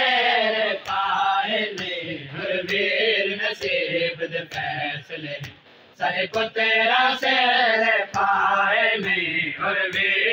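A group of male voices chanting a noha, a Shia lament, in unison, with sharp chest-beating (matam) slaps about once a second keeping time. The chanting breaks off briefly a little past halfway, then resumes.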